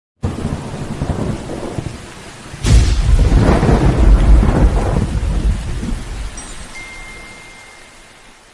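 Thunderstorm: steady rain, then a sudden loud thunderclap about two and a half seconds in that rolls on for a few seconds and fades away together with the rain.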